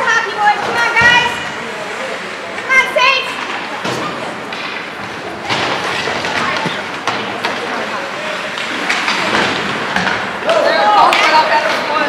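Ice hockey rink sound: shouts from players and onlookers ringing in the arena, with several sharp thuds of sticks, puck and bodies against the boards. The shouting comes in short bursts near the start, about three seconds in, and again near the end.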